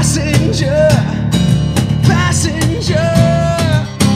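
Live acoustic rock music: a strummed acoustic guitar under a male voice singing drawn-out, bending notes without clear words. One long held note comes near the end.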